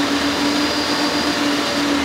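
An Ingersoll-Rand engine-driven machine running steadily, a loud even noise with a steady hum, measured at about 92 dB on a sound level meter: above the 85 dB level held hazardous for prolonged exposure.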